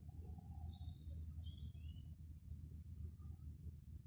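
Faint bird chirps in the background, several short high calls close together in the first couple of seconds and a few scattered ones after, over a low steady rumble.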